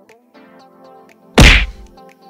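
Soft background music with steady held tones. About one and a half seconds in comes a single loud, sudden hit, a sound effect of an animated subscribe button appearing on screen.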